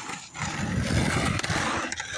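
Skateboard wheels rolling over rough concrete close to the microphone, a loud rumble that swells about half a second in and holds for over a second.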